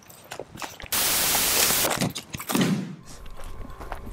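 Footsteps crunching on gravel, broken by a loud rush of noise about a second long near the middle.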